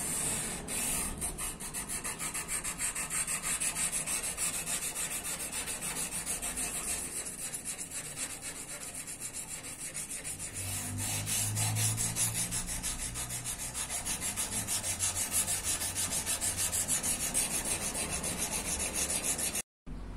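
Sandpaper strip rubbed by hand in fast, even back-and-forth strokes along a 5160 steel karambit blade, hand-sanding it toward a mirror polish. The rubbing breaks off briefly near the end.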